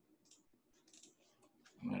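A few faint, scattered clicks of a computer mouse and keyboard.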